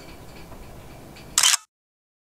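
Faint background hiss, then a brief sharp click of a camera being handled, about one and a half seconds in, after which the sound cuts to dead silence at an edit in the recording.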